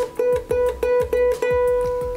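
A single ukulele string, the A string held at the second fret (a B note), plucked repeatedly about four to five times a second. The last note is left to ring and fades.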